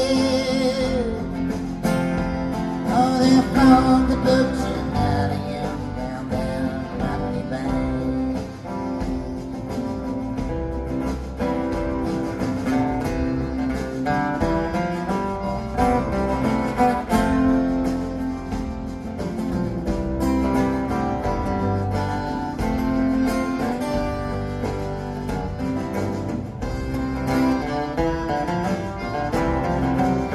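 Live acoustic band music: acoustic guitar strumming and picking over an upright double bass in a steady rhythm, in a passage with no sung words.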